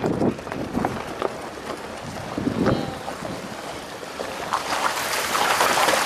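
A vehicle rolling over loose river stones with scattered crunches and knocks, then driving into a shallow stream ford: the rush and splash of water around the tyres swells louder over the last second or two.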